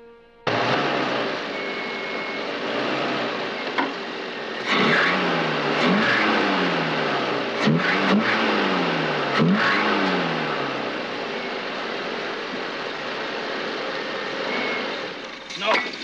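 A car engine starts abruptly and runs loudly. Its pitch rises and falls several times in quick succession, as if revved and let drop, and then it settles to a steadier run.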